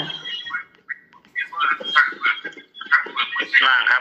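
Speech: a voice talking in short phrases with brief pauses.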